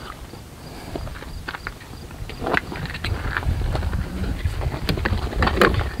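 Scattered light knocks, bumps and rustles of a person shifting across onto a wheelchair-lift transfer seat, over a low, uneven rumble.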